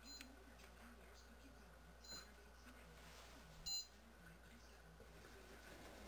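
Near silence, broken by three brief high-pitched chirps; the loudest comes about three and a half seconds in.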